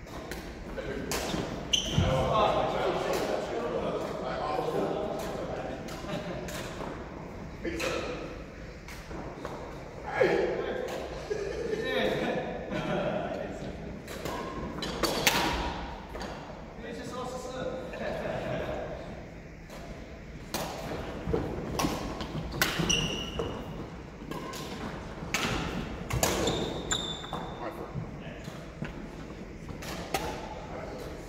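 Badminton doubles play in a large hall: sharp racket strikes on the shuttlecock and footfalls on the wooden court, with players' voices and a few short high squeaks.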